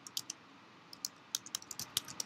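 Typing on a computer keyboard: three keystrokes, a short pause, then a quicker run of keystrokes in the second half.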